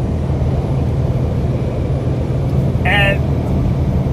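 Steady low hum of a vehicle's engine and road noise heard inside the cab while cruising at highway speed. A brief vocal sound comes about three seconds in.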